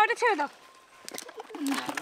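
Women's voices talking briefly at the start and again near the end, with a quieter pause in between.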